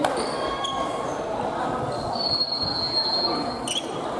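Sneakers squeaking on a wooden gym floor during badminton rallies, short squeaks early and one long squeal of about a second and a half in the middle, over the general chatter of a busy sports hall.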